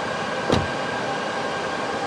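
Steady fan whir with a faint high whine from DC fast-charging cooling equipment, running under load while charging at about 38 kilowatts. A single short knock comes about half a second in.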